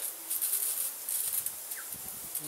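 Misting-system nozzles just switched on, water coming through the line: a faint, high-pitched hiss with irregular crackling. A short rising bird chirp sounds near the end.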